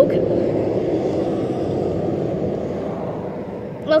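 A passing vehicle's steady rumble that swells slightly about a second in, then slowly fades.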